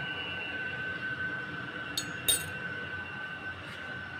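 Two light clinks of a metal spoon about two seconds in, a quarter second apart, each with a short bright ring. Under them runs a steady kitchen hum with a faint constant high tone.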